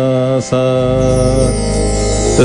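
A male voice sings two long, steady held 'sa' notes on the tonic, ending the descending line of a Carnatic swara exercise (sa ni da pa ma ga ri sa, sa, sa). The second note fades out about a second and a half in, over a low hum.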